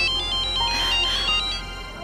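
Mobile phone ringing with an electronic ringtone: a quick melody of high notes stepping up and down, repeating.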